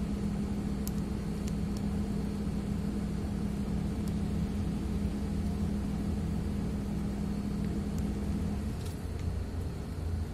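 Inside a medium-size city bus on the move: the engine's steady drone and low road rumble, with a few faint clicks. The droning tone drops away near the end.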